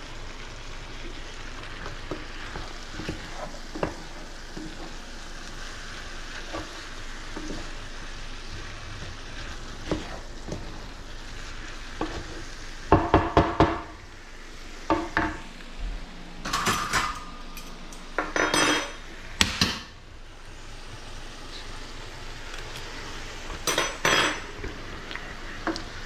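Vegetables sizzling in sauce in a skillet while a wooden spatula stirs and scrapes through them. In the second half come several clusters of sharp knocks and clinks of utensils against the pan, some with a short metallic ring.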